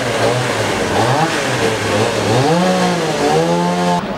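A small petrol engine revving up and down repeatedly, rising twice in the second half to a held higher rev.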